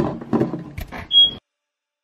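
Indistinct sounds, then a single short high-pitched electronic beep a little after one second in, after which the sound cuts off completely.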